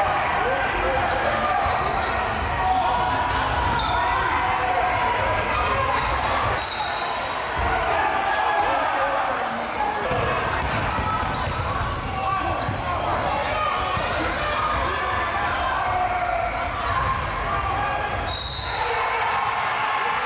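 Live game sound of a basketball being dribbled on a hardwood gym floor, with indistinct voices from players and spectators echoing in the large gym.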